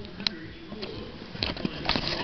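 Scattered light clicks and taps over a low background: one sharp click shortly after the start, then a cluster of clicks near the end.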